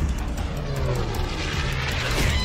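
Cartoon explosion sound effect: a loud, continuous rumbling blast that carries on after the boom. It comes from a boomerang that was ticking like a bomb and has just gone off.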